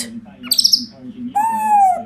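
African grey parrot calling: a short high chirp about half a second in, then a longer call that falls slightly in pitch toward the end.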